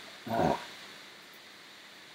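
One brief voice-like sound, about a third of a second long, about a quarter second in, then quiet room tone.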